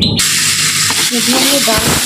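Red lentils and dried red chillies frying in a pan, a steady loud sizzle that starts suddenly just after the beginning.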